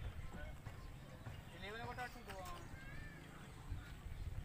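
Faint outdoor field sound: distant voices talking about two seconds in, over a low wind rumble on the microphone, with a few light knocks.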